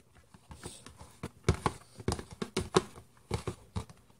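Hands kneading and squeezing soapy homemade borax slime in a plastic tub: a string of irregular sticky clicks and pops, starting about half a second in.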